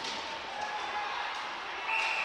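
Ice hockey rink ambience during live play: a steady hiss of skates on the ice and arena noise.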